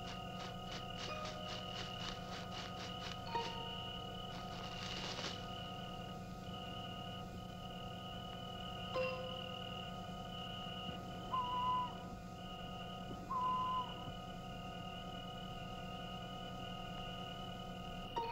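Crickets chirring steadily in the night, with rapid ticking pulses in the first few seconds. Several short, faint cries of a baby come through, the two loudest a little over halfway through.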